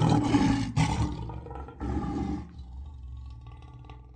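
Lion roar sound effect in three swells, the last about two seconds in, then fading away.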